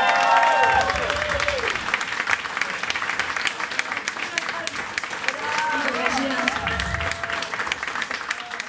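Audience applauding steadily, with voices whooping and calling out over the clapping near the start and again about six seconds in.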